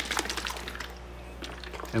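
Liquid phytoplankton culture sloshing inside a capped plastic bottle as it is inverted to mix the settled cells back through the water. The sloshing dies away after about a second.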